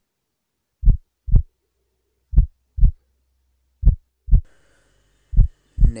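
Heartbeat sound effect: pairs of low thumps, lub-dub, repeating about every second and a half with silence between, four beats in all. A faint hiss comes in near the end.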